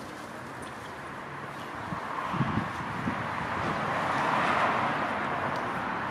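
A car passing on the street: tyre and road noise that swells over a few seconds and peaks near the end, with a couple of soft low thumps.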